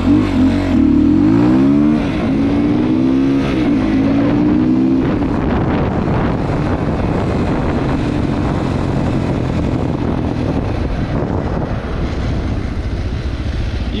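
GPX FSE300R motorcycle engine, running on an Aracer Mini5 ECU, revving up through the gears with a shift about two seconds in. From about five seconds in it is off the throttle and slowing, with a little backfire popping: the tune still needs work.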